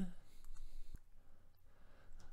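A computer mouse button clicking once, sharply, about a second in, against faint room noise.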